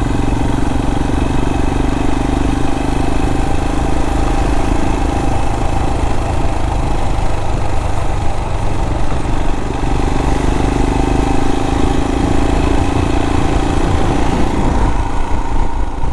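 Motorcycle engine running under way, with wind rush and the tyres on a wet road. The engine note is strong at first, eases off in the middle and picks up again towards the end.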